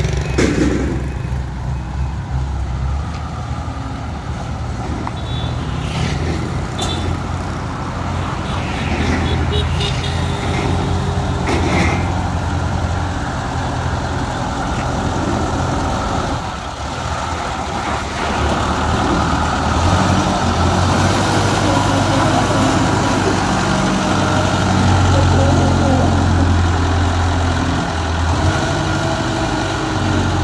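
Small diesel engine of a tracked rice-hauling tractor running under load as the crawler climbs a bank, with a few metallic clanks. It runs louder in the second half as the machine drives along the road.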